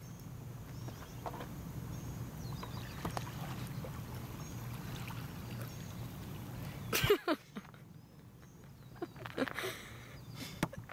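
A small bass hooked on rod and line splashing at the water's surface as it is reeled in to the bank, over a steady low rumble. A loud sudden burst of sound comes about seven seconds in, with smaller ones near the end.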